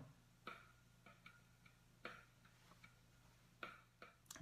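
A guide drum pattern from Logic Pro X played through a MacBook's built-in speakers, heard only faintly as a light, uneven ticking of thin drum hits with no low end.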